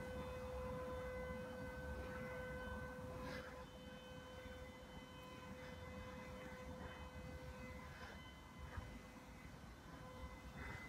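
A steady hum with a clear pitch and several overtones over a low rumble, a little quieter from about a third of the way in. A few faint soft brushing sounds of a hand moving over shaggy faux fur.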